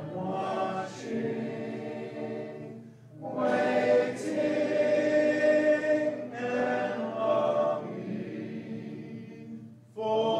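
A congregation singing a hymn a cappella, many voices in harmony with no instruments, in sustained phrases with short breaks between them.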